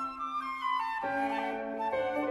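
A flute, cello and piano trio playing a fast classical-era chamber movement live. A melody falls over a held low note, and the texture fills out about a second in.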